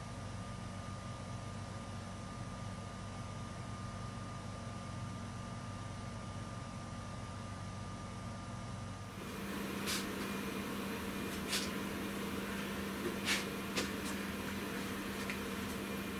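Steady workshop background hum with a faint high whine. About nine seconds in, the background changes to a different, deeper steady hum with a few faint clicks and knocks.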